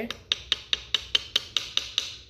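A mallet tapping a small soldered bezel ring on a ring mandrel, about ten quick, evenly spaced strikes at roughly five a second, each with a short metallic ring. The taps are rounding the bezel out into a true circle to fit a garnet.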